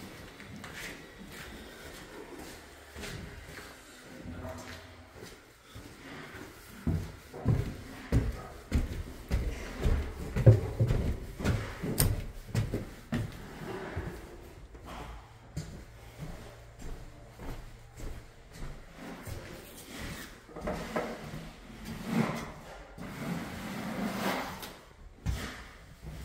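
Footsteps and irregular knocking thumps from someone walking through a house, densest and loudest in the middle.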